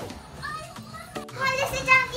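Background music, then after an abrupt cut about a second in, children playing, with a young child's high-pitched voice that is loudest near the end.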